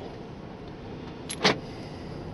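Steady road and engine noise inside a moving car's cabin, with a single sharp knock about one and a half seconds in.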